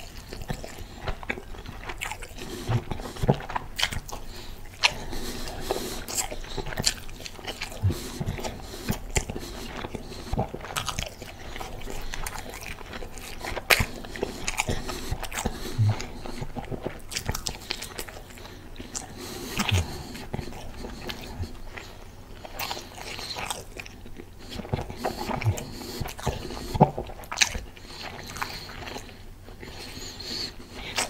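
Close-up chewing of a turkey cheeseburger on a soft bun dipped in sauce, with many short, irregular mouth clicks and smacks throughout.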